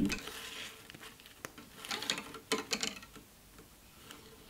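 Faint rubbing and scraping of fine silver gallery wire being pressed around a gemstone on a silver sheet, with one sharp light click about a second and a half in and a few short scrapes shortly after.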